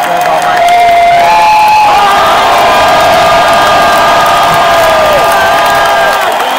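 Large concert crowd cheering and screaming loudly, with several long steady tones held above the noise, one sliding down in pitch about five seconds in.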